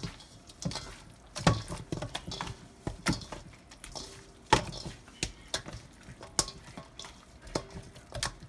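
Hand working chunks of seasoned goat meat around a stainless steel bowl: irregular knocks and rubbing of meat against the metal. The loudest knocks come about one and a half and four and a half seconds in.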